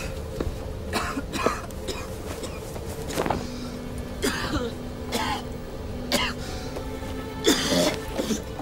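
A man coughing and gasping again and again, about seven harsh bursts, the loudest near the end, over a steady low rumble.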